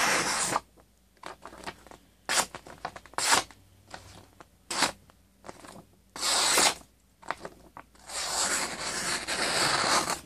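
A Rambo First Blood replica knife blade slicing through a held sheet of printer paper: a long cut at the start, a few short quick strokes through the middle, and another long steady slice over the last two seconds. The blade cuts the paper cleanly, razor sharp straight out of the box.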